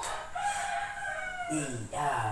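A rooster crowing once: one long, steady call of a little over a second that falls slightly in pitch as it ends.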